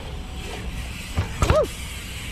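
Dirt jump bike rolling over paving toward a kicker ramp, with two sharp knocks about a second and a half in, over a steady background hum of traffic. Right after the knocks comes a short voice call that rises and falls in pitch.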